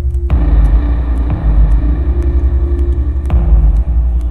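Dark ambient music: a deep, pulsing rumble under a held drone tone, with a hissing layer of noise that swells in just after the start and fades near the end.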